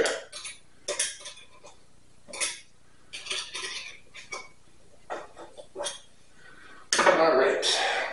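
Metal rotisserie spit and its forks clinking and scraping as they are adjusted and tightened on a trussed capon, in short irregular clicks, with a longer, louder clatter near the end.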